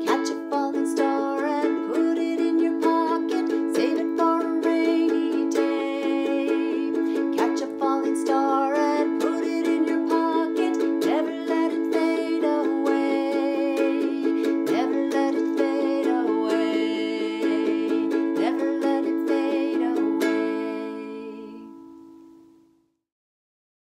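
A woman singing a gentle melody over a strummed Gretsch ukulele in a steady rhythm. Near the end the singing stops and the last chord rings and fades away.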